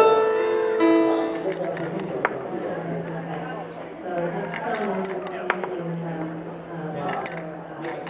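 Keyboard music ends about a second in, followed by indistinct chatter of a crowd, with a couple of sharp clicks as wooden toys are handled.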